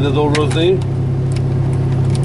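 Excavator's diesel engine idling, a steady low hum heard from inside the cab, with a few light crackles of a plastic food packet being handled.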